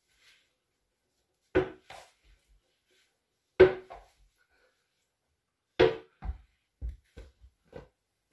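Plastic toy cricket bat striking a ball on the volley, three sharp knocks about two seconds apart, the middle one the loudest. After the third comes a quick run of lighter knocks.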